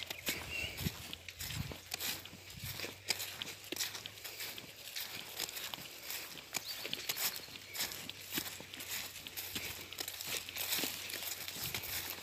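Footsteps through grass and brush, with irregular rustling and snapping of stalks underfoot.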